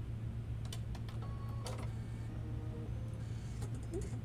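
A few scattered, irregular light clicks and taps over a steady low hum.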